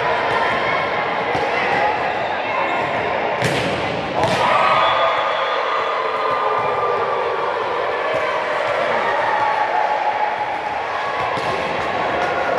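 Volleyballs being struck and bouncing on the court floor in a large echoing sports hall, over a steady hubbub of voices; the two loudest smacks come close together a little over three seconds in.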